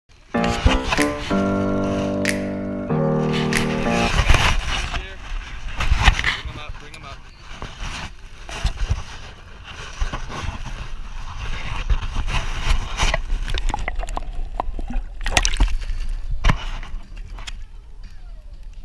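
A short musical intro of held, stepping notes in the first few seconds. It gives way to a noisy outdoor stretch of water splashing and scattered knocks while a hooked trout is played beside the boat and swung out of the water.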